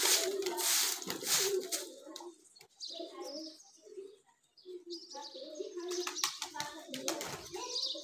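Domestic pigeons cooing repeatedly, low rounded calls coming again and again, with a rushing noise over them in the first couple of seconds.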